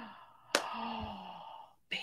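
A woman's long, breathy sigh, with a low voice that falls slowly in pitch, set off by a sharp click about half a second in. A short breathy sound follows near the end.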